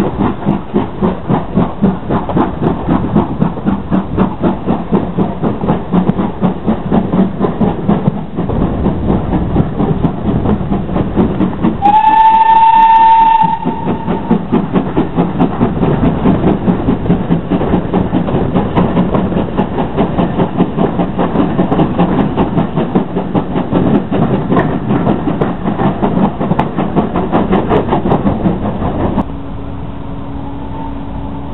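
Steam-hauled passenger train on the move, heard from an open carriage window: a quick, even beat of the running train throughout. About twelve seconds in, the steam locomotive's whistle blows once, loud, for about a second and a half, its pitch rising slightly.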